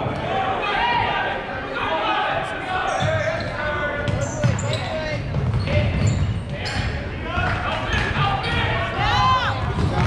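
A basketball bouncing on a gym floor during play, with many voices talking and shouting, echoing in a large hall.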